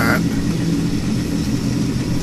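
Reef aquarium sump equipment running: a steady pump hum with rushing water.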